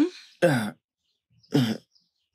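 A man's voice hesitating: two short "euh" sounds about a second apart, with silence between.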